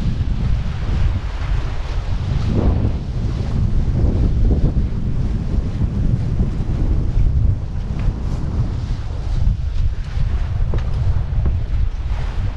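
Wind buffeting the camera microphone in a steady low rumble, over the rush and wash of water around a moving sailing trimaran's hulls.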